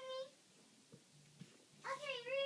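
A young child's high voice holding a sung note, which trails off just after the start. After a short quiet pause, a new sustained sung note begins near the end.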